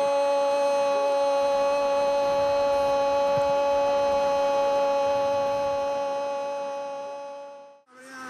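A football commentator's long drawn-out "gooool" goal call, held on one steady note that fades out over the last two seconds.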